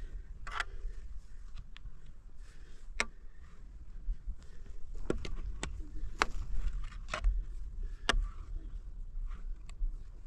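Long-handled shovel digging into dry, stony soil: the blade scrapes and strikes the ground in irregular sharp strokes, roughly one every second or so.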